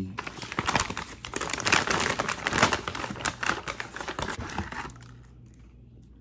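Paper takeout packaging crinkling and rustling as it is handled and unwrapped, in dense irregular crackles, loudest about two seconds in. It dies down in the last second.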